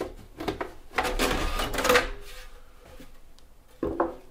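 Top cover of a QNAP H686 NAS case being unlatched and slid off: a couple of clicks, then about a second of scraping and rattling, and a last click near the end.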